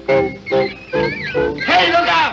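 Orchestra from a 1930s film musical soundtrack, playing short pitched chords on an even beat of about three a second. Near the end a voice with sliding pitch comes in over the band.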